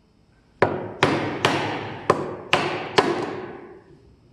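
Claw hammer striking a Narex mortise chisel driven into a wooden block: six sharp knocks about half a second apart, each ringing briefly, as the mortise is chopped.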